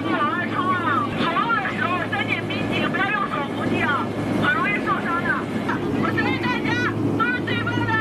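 A voice calling out jump instructions and encouragement, heard over the steady drone of a transport aircraft's cabin in flight.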